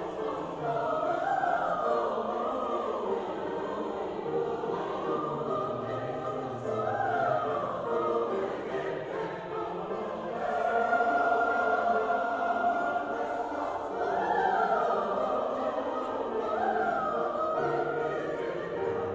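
Large mixed choir of men and women singing a flowing choral piece, the melody rising and falling, with a long held note about halfway through.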